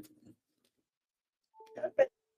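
Phone-line audio from a call-in connection: a spoken phrase tails off at the start, then a pause, and near the end a short electronic beep of two steady tones sounds under a brief snatch of voice.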